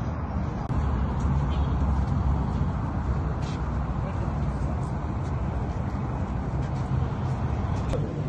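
A steady, low rumbling background noise with no distinct events.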